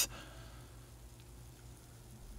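Faint steady hiss with a low hum underneath: the background noise of the recording between spoken phrases.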